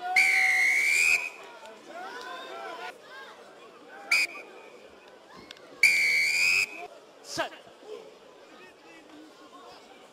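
Rugby referee's whistle: a long blast at the start, a short pip about four seconds in, and another long blast around six seconds, blown to stop play at the scrum and ruck. Faint crowd and player voices underneath.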